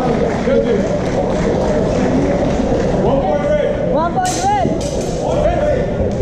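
Indistinct chatter of several people's voices, with a louder voice calling out about four seconds in.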